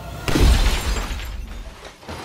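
Designed title sound effect: a sudden smashing crash with a deep boom, as a film reel breaks through the title lettering. It starts about a quarter second in and dies away over the next second and a half.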